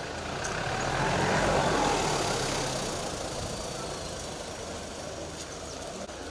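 A motor vehicle passes close by. Its engine and road noise swell to a peak between about one and two seconds in, then fade away, over a steady low engine hum.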